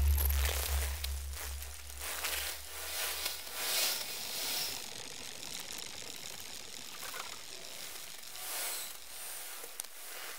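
Electroacoustic music: a deep low hum fades away over the first few seconds beneath noisy textures that swell and fade several times.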